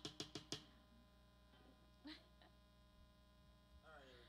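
Low steady electrical hum from the band's amplifiers on a quiet stage, opened by four quick sharp bursts in the first half second.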